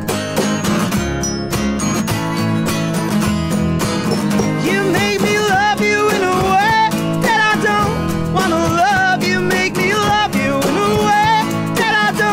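Live acoustic band playing: two strummed acoustic guitars, double bass and drums. Sung vocals from the lead and a backing singer come in about four to five seconds in.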